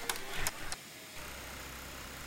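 Metal payphone keypad buttons clicking under a finger, a few sharp clicks in the first second. They are followed by a steady low hum.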